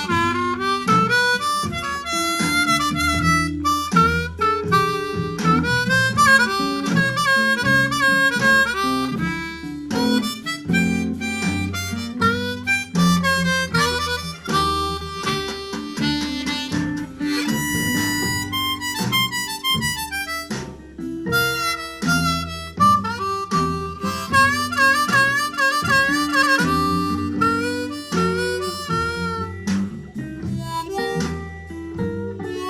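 Blues harmonica played in second position, with quick runs of triplets between held and bent notes, over a backing track with guitar.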